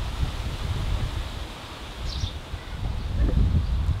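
Wind rumbling on the microphone outdoors, with a short high bird chirp about halfway through.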